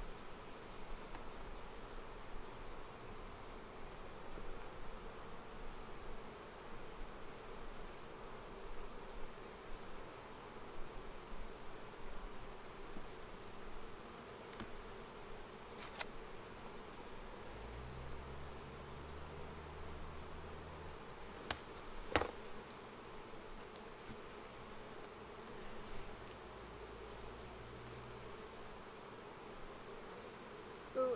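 A swarm of honeybees buzzing steadily around an open hive, with a couple of sharp clicks past the middle and a low hum that comes in briefly.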